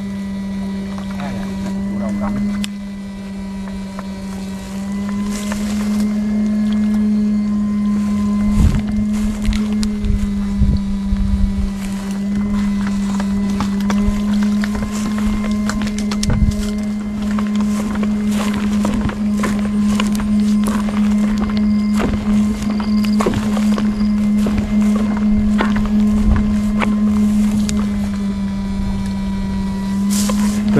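Electrofishing shocker's inverter humming steadily at a low pitch, with irregular clicks and knocks throughout.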